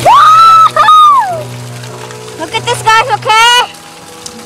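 A child's high-pitched excited squeals: a long held cry that falls away in the first second, then a quick run of rising squeals around three seconds in, over upbeat background music.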